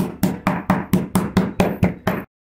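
Metal meat mallet pounding pork cutlets through plastic wrap on a stone countertop: a steady run of strikes at about four a second.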